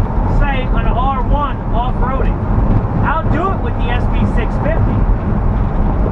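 Steady low drone of a van's engine and tyres at highway speed, heard inside the cab, with a man talking over it.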